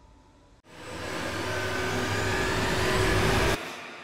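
Logo-intro whoosh sound effect: a rising swell of noise starts suddenly, builds steadily louder for about three seconds, then cuts off abruptly and leaves a fading tail.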